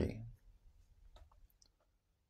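Pause in a man's read-aloud narration: the last word fades out, then a few faint small clicks over the next second or so and near silence.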